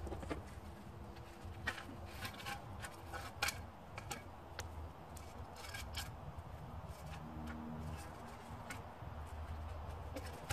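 Scattered light metallic clicks and scrapes as pieces of extruded aluminum scrap are handled and cleaned, about a dozen short knocks spread irregularly, over a low steady background rumble.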